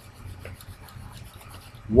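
Low steady background hum with faint rubbing noise and a soft click about half a second in.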